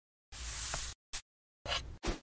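Paper rustling as the pages of an open workbook are smoothed by hand, with a short tick just after a second in and a second, briefer rustle near the end, separated by dead silence.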